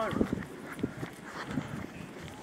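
A runner's footsteps on asphalt at a jogging pace, about three light steps a second.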